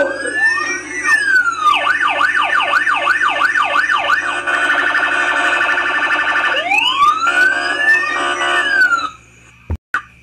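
Police siren sound effect: a long wail rising and falling, then a fast yelp of about three sweeps a second, then a rapid warble, then another long rising and falling wail. It stops suddenly about nine seconds in.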